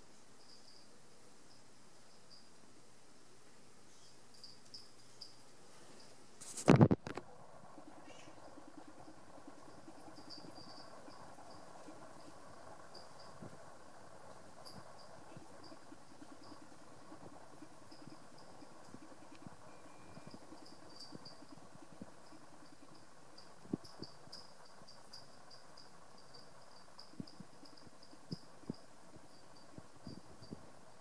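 Quiet background with faint, short, high-pitched chirps coming on and off throughout, one loud knock about seven seconds in, and a few soft clicks later on. No deadbolt motor runs: the lock fails to auto-lock.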